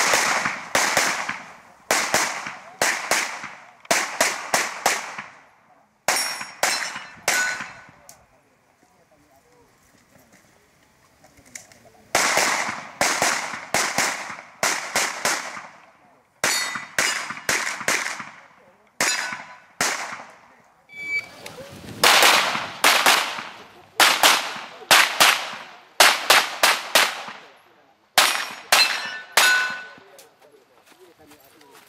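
Handgun fired in rapid strings of shots, many in quick pairs. The shooting stops for about four seconds about eight seconds in, then resumes in two more long strings.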